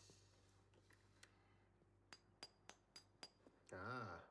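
Small bump hammer tapping a bump key in a lock cylinder: a quick run of about half a dozen light metallic taps with a brief ring, about four a second, in the second half, after a couple of fainter knocks.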